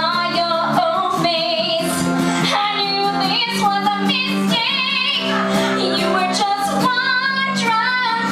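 A woman singing live into a microphone, accompanied by acoustic guitar, with some held notes sung with vibrato.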